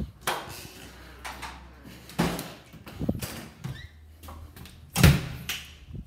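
A building door being opened and swinging shut, with several knocks and thumps; the loudest thump comes about five seconds in.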